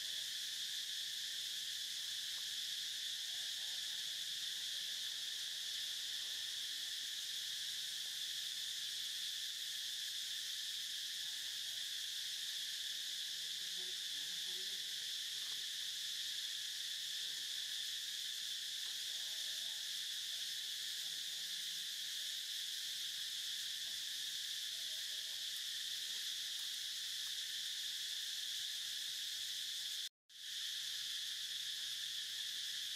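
Continuous insect chorus: an even, high-pitched drone that keeps one level without pause.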